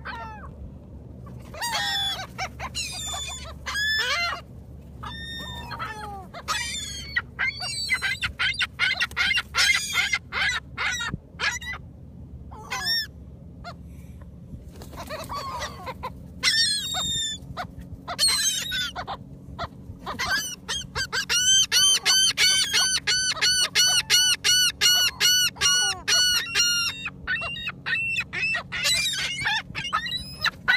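Gulls calling repeatedly around the hand-held food, many short harsh calls overlapping. About twenty seconds in, a long run of rapid calls comes at several a second.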